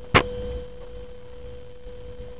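A steady, even hum tone with one sharp click just after the start.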